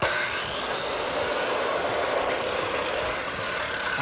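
Steady whirring of a motorized tool, starting abruptly and running evenly for about four seconds.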